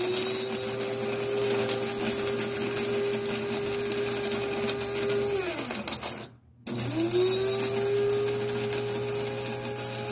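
Electric blade coffee grinder running, whirring steadily as it grinds dried hot peppers and their seeds into powder. About six seconds in, its pitch falls away and it stops, then it starts again under a second later and spins back up to speed.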